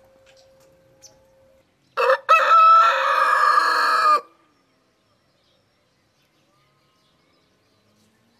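Rooster crowing once: one loud call about two seconds long, starting about two seconds in.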